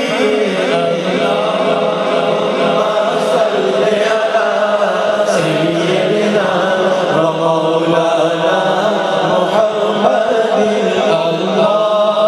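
A man singing a naat, an Urdu devotional poem, through a microphone in long, flowing melodic phrases with gliding, ornamented notes.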